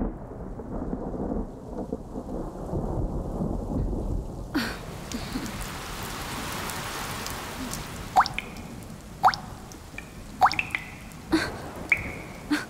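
A low thunder rumble, then heavy rain comes in suddenly about four and a half seconds in and keeps falling steadily. From about eight seconds, single water drops plop loudly over the rain, roughly once a second.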